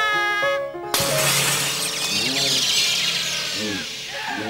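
A cartoon canary's high sung melody, cut off about a second in by a sudden loud crash whose bright, noisy tail fades over the next three seconds.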